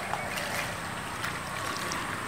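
Steady outdoor background noise with a faint low hum, a thin high steady tone and a few faint ticks.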